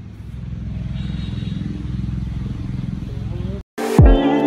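Low, steady engine rumble of a motor vehicle. It grows louder over the first second, holds, and cuts off suddenly near the end, where music begins.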